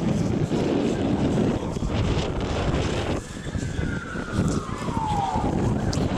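Wind buffeting the microphone over outdoor street and crowd noise. About three seconds in the sound changes abruptly, and a single thin whine slides slowly down in pitch for about two seconds.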